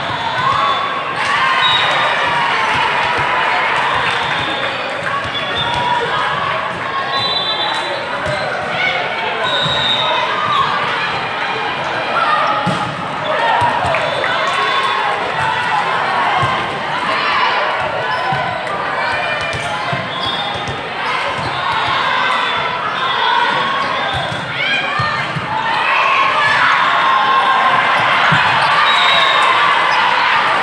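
Hubbub of a hall with several volleyball games going on at once: many overlapping voices of players and spectators, with volleyballs being struck and bouncing on the courts. The voices grow a little louder over the last few seconds.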